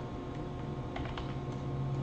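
Typing on a computer keyboard: several separate, unevenly spaced key clicks as a word is typed.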